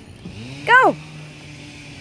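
Electric drive motor of a toy Kawasaki KFX ride-on quad whirring, spinning up just after the start as the foot pedal is pressed and then running at a steady pitch. A short, high voice call cuts in briefly under a second in.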